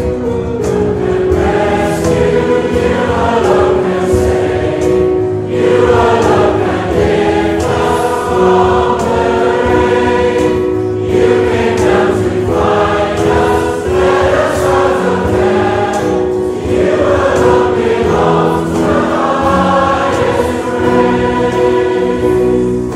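A group of voices singing the chorus of a worship song together, over sustained instrumental accompaniment.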